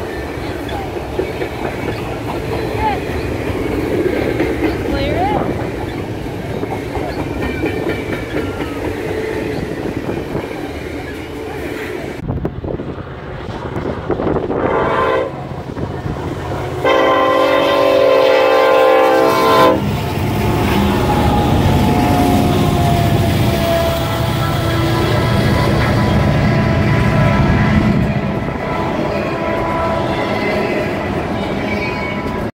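A double-stack container freight train rolls past with steady wheel clatter and rumble. About halfway through, an approaching diesel locomotive sounds its multi-tone air horn: a short blast, then a long one of about three seconds. Its container cars then rumble past.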